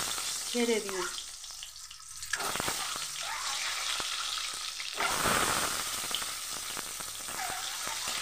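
Whole boiled eggs frying in hot oil in a metal kadai: a steady sizzle that flares up about two seconds in and again about five seconds in, as the second and third eggs go into the oil.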